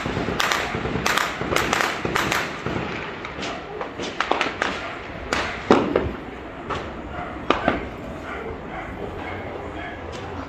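Gunfire: a rapid string of shots in the first two seconds or so, then scattered single shots, the loudest about halfway through.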